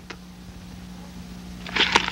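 Steady low electrical hum with faint hiss, and a short burst of noise near the end.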